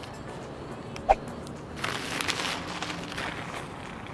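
A single short, sharp click about a second in, then a couple of seconds of rustling from something being handled.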